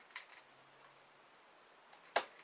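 Near silence: faint room tone, with two faint small clicks close together just after the start, from handling a pillowed 3x3 puzzle cube and its popped-out plastic centre cap.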